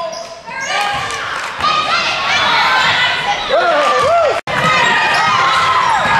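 Gym basketball game: spectators shouting and cheering over squeaking sneakers and the ball bouncing on the hardwood. Voices grow louder about a second and a half in. The sound drops out abruptly for a moment a little past four seconds in, then carries on.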